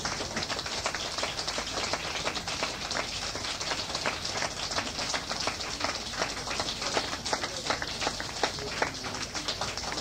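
Concert audience applauding: a steady, dense patter of many hand claps.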